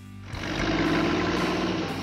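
Truck engine running, a rumbling sound effect that comes in about a third of a second in, with music under it.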